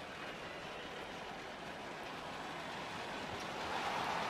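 Steady arena background noise in a near-empty basketball arena: an even wash of piped-in crowd sound with no distinct events, growing a little louder near the end.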